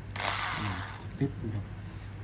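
Electric drill spun up briefly: one short whir lasting under a second, near the start.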